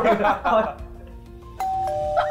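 Excited group shouting at the start. About one and a half seconds in, an electronic doorbell-like two-note chime starts, falling from a higher note to a lower one, with both notes held.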